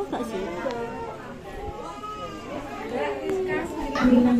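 Only voices: several people talking over one another in a room, quieter than the nearby speech.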